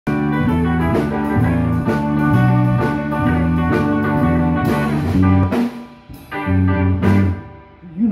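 Live electric blues band, two electric guitars and a drum kit, playing a repeating instrumental riff with a steady beat. The band drops out briefly twice in the last few seconds.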